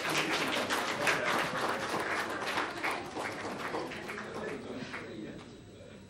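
Audience applauding, the clapping thinning out and fading away about five seconds in.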